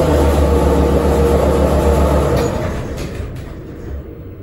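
Schindler 330A hydraulic elevator's single-slide car door closing and the car getting under way, with a strong low hum that eases off about two and a half seconds in.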